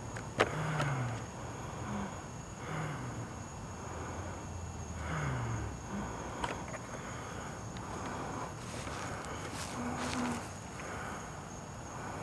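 Night-time outdoor ambience: insects trilling steadily at a high pitch, with a few faint, short, low falling sounds and a couple of soft clicks.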